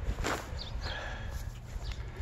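Footsteps on dry grass, with a few short, high chirps over a steady low rumble.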